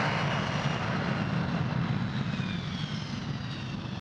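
A steady low rumbling noise that slowly fades, with faint high tones drifting gently downward near the end.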